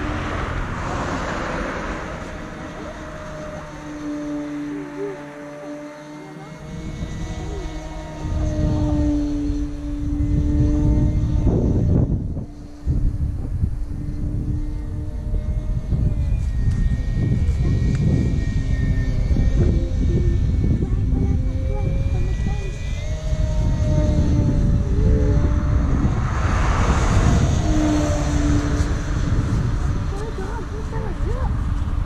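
E-flite Carbon-Z Cub SS radio-control plane's electric motor and propeller droning in flight, the pitch wavering as the plane turns and passes. It grows louder near the start and again near the end, over a low rumble of wind on the microphone.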